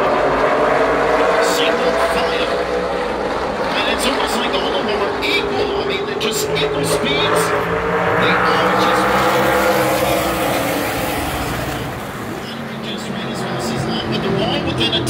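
Pack of super late model stock cars racing around the oval, their V8 engines rising and falling in pitch as the cars come past and move away. The sound is loudest about two-thirds of the way through, then eases briefly near the end.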